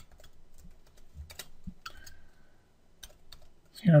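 Typing on a computer keyboard: scattered, irregular key clicks as a line of code is entered.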